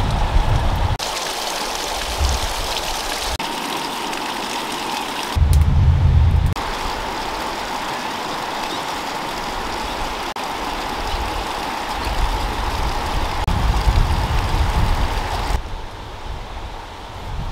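Steady rushing of running water. The sound changes abruptly several times, and a low rumble comes and goes between the changes.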